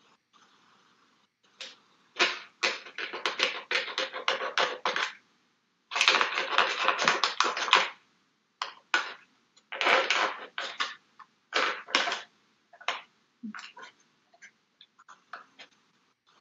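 A pen blade (precision craft knife) carving into a dried, brittle wafer paper mache pumpkin shell: bursts of dense crackling, scratchy cuts, two longer runs in the first half, then shorter strokes.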